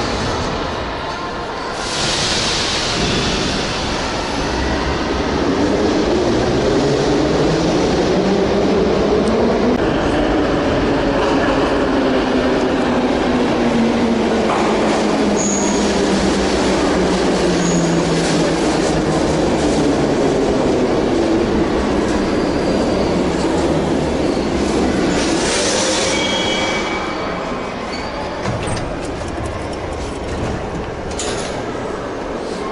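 A metro train running into the station and braking to a stop: the motor whine falls steadily in pitch as it slows, over the rumble of wheels on rail, with a brief high wheel-and-brake squeal as it comes to a halt near the end.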